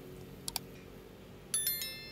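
Two light clicks, then a short bright metallic chime or clink that rings on several high tones and fades away.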